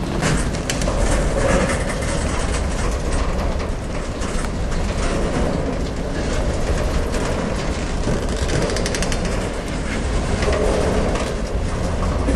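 Freight train of boxcars rolling past close by: a steady rumble of wheels on rail with many quick clicks and clacks.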